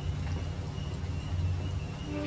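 A low steady hum under faint hiss, with no distinct event.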